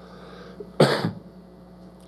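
A single short cough about a second in, as loud as the speech around it.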